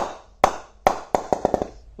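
Wooden cricket-bat mallet knocking the face of an SS Master 9000 English willow cricket bat near the toe: about eight sharp knocks with a short ring, the first three about half a second apart, then a quicker run. A lovely sound, the bat's ping.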